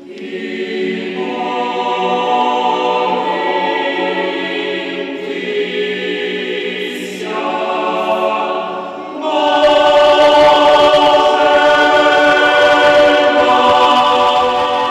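Choir singing Orthodox sacred music in long, held chords, swelling louder and fuller about nine and a half seconds in.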